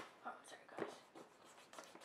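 Pencil scratching on a sheet of paper in a series of short, faint strokes.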